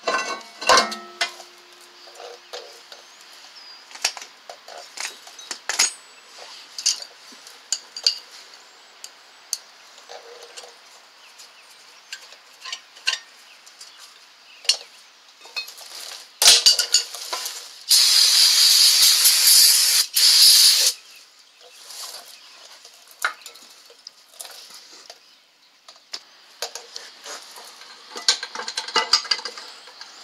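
Metal clinks and knocks of hand tools and brake parts as a new rear brake rotor and caliper bracket are fitted. About sixteen seconds in comes a loud spray hiss in a few bursts, the longest about two seconds.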